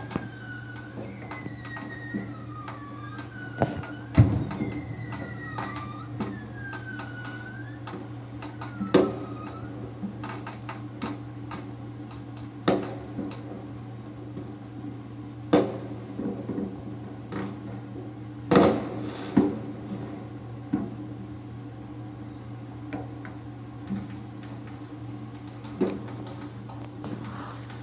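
Distant fireworks going off: single sharp bangs a few seconds apart, the loudest about four seconds in and two close together a little past two-thirds of the way, over a steady low hum.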